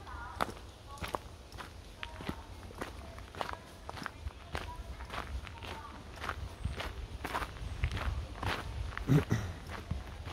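Footsteps on a leaf-littered dirt forest path at a steady walking pace, a little under two steps a second, over a low constant rumble. A brief low vocal sound, like a grunt, comes near the end.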